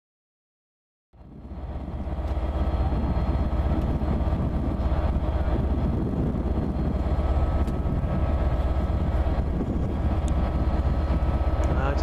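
Steady, loud drone of idling railway diesel engines, with a deep low hum and steady engine tones. It fades in about a second in after silence.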